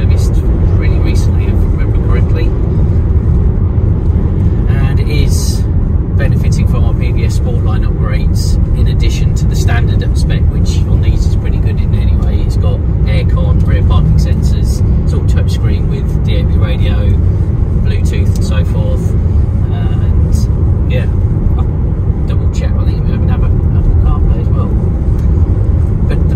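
Steady diesel engine and road noise inside the cabin of a Citroen Dispatch van with a 1.6 BlueHDi 115 four-cylinder turbodiesel, driving along an open road.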